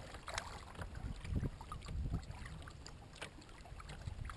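Lake water lapping and splashing against a moving kayak's hull, with scattered small splashes and a few low thumps.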